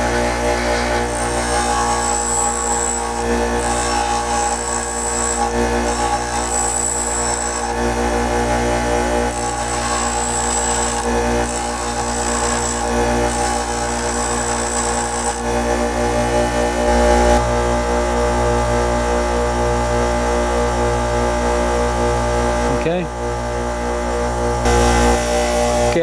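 Bench grinder motor running steadily as a twist drill bit is ground against the spinning wheel. Its point is sharpened in about six short grinding strokes, each a gritty high hiss, over the first fifteen seconds or so. The strokes follow a three-strokes-per-side pattern, with the bit flipped 180 degrees between sides, and then the grinder runs on alone.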